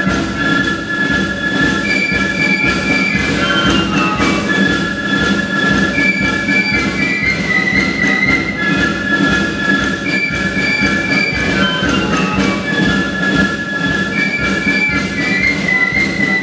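Flute band playing a melody in unison, the flutes holding sustained notes that step up and down in pitch, over a steady percussive beat.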